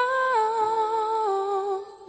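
A wordless voice humming a slow melody in long held notes that step down in pitch, part of an acoustic cover song.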